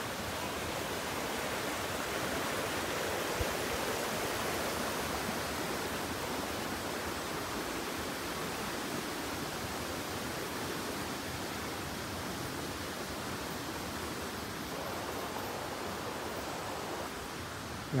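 Steady rush of a brook running full, an even water noise that grows a little fainter in the second half.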